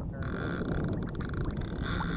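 Fishing reel ratcheting in a rapid steady ticking as a hooked flathead catfish pulls line off it, over low wind and water noise on the microphone.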